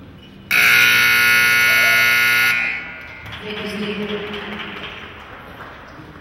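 Arena buzzer sounding one loud, steady blast of about two seconds, starting and stopping abruptly: the signal that ends a cutting horse's timed run.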